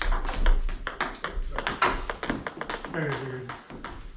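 Table tennis balls struck by paddles and bouncing on the table in quick succession: a rapid run of sharp clicks. A short voice sound comes about three seconds in.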